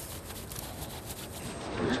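Steady outdoor background noise with a few faint clicks and rustles, then a voice begins near the end.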